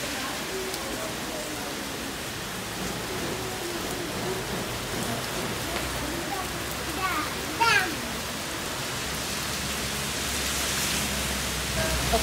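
Heavy rain pouring steadily on a street, a constant hiss of downpour on wet pavement and parked cars. A short high-pitched call stands out over the rain about seven and a half seconds in.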